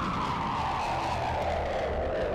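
Intro sound effect on a melodic death metal recording: one slowly falling whine over a low rumble.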